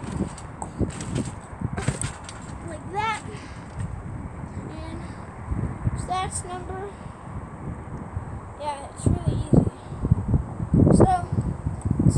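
A trampoline being bounced on: irregular low thuds of the mat and springs, heaviest near the end.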